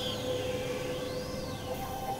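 Experimental electronic synthesizer drone: a steady mid-pitched tone held under a thin, high whistling tone that glides down, rises and falls again, over a grainy, crackling noise bed.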